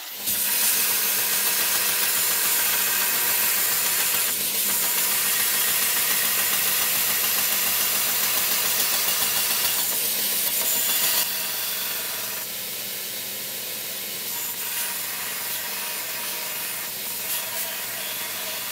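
Belt grinder running with a steel round-knife blank pressed against the moving belt: a steady grinding hiss over the faint hum of the motor. It eases a little about two-thirds of the way through.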